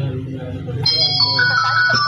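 Calme 210 feature phone ringing with its ringtone, which starts about a second in: a bright electronic melody of steady tones, heard over background music. The ring is the sign that incoming calls now get through instead of showing 'number busy'.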